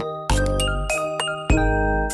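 Light, chiming background music, with deep bass notes about half a second and a second and a half in.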